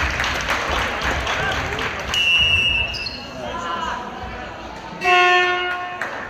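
A handball game in a sports hall, with a ball bouncing and players calling out. A referee's whistle sounds briefly about two seconds in, and a loud buzzer horn sounds for under a second near the end.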